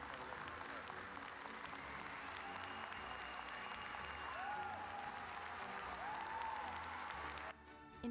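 An audience applauding steadily, with background music underneath, cut off abruptly near the end.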